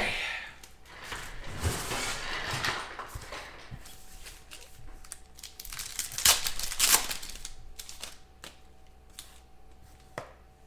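Foil trading-card pack from a 2016 Phoenix football box being torn open and crinkled by hand, with two sharp clicks about six and seven seconds in. The cards are then handled as the stack is pulled out.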